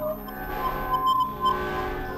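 Experimental electronic music: several held synthesizer tones layered into a glassy, chiming drone that swells and fades, with a few short high pings about a second in.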